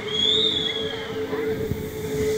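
A long steady tone held throughout, with a high whistle that rises and then falls over about the first second, above the noise of a street crowd.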